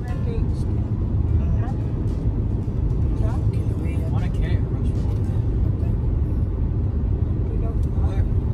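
Steady low rumble of car road noise heard inside the cabin while driving at highway speed, with faint short snatches of voice over it.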